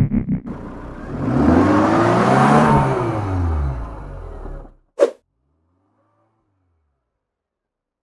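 A car engine revving sound effect: the pitch climbs and then falls away over about three and a half seconds, with a rushing hiss, ending in a short sharp hit about five seconds in, then silence. Pulsing synth music from the intro fades out in the first half second.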